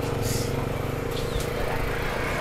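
A small engine running steadily with a low hum.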